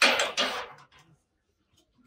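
A short clatter of items being set into a wire shopping cart, loud at the start with a second surge just after, dying away within about a second.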